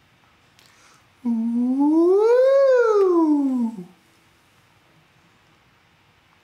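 A man's voice doing a vocal 'siren' warm-up, one smooth glide that rises in pitch and falls back down, lasting about two and a half seconds and starting about a second in.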